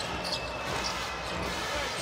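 Basketball being dribbled on a hardwood court over the steady hum of an arena crowd.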